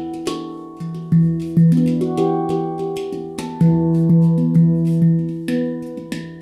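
Ayasa handpan tuned to E Amara (E minor) played by hand: a quick flow of struck steel notes, each ringing on over the next, with the deep low note returning again and again beneath higher notes and light percussive taps.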